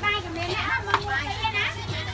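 Speech: young people's voices talking close to the microphone, with a steady low hum beneath.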